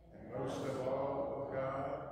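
A priest's voice reading liturgical text aloud in a slow, chant-like recitation, holding syllables on a near-steady pitch. It begins about a third of a second in, after a short breath pause.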